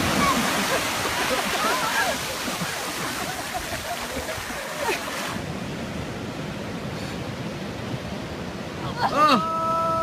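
Surf washing up a beach, with faint voices in it, for the first five seconds. Then the sound cuts to quieter surf, and near the end a person gives a loud, long held cry.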